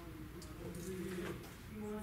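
Low, indistinct murmur of a person's voice, held on a few steady pitches.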